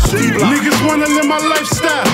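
Hip hop track: rapped vocals over a beat.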